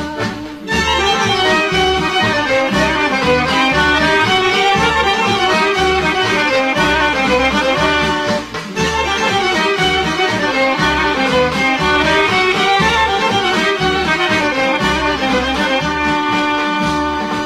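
Instrumental interlude of a traditional folk song: a fast violin melody with accordion over a steady low beat, with no singing. The music breaks off briefly just after the start and again about halfway through.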